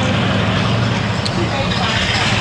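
A motorcycle engine idling steadily close by.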